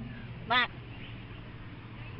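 A single short spoken word about half a second in, then a faint steady low hum with nothing else standing out.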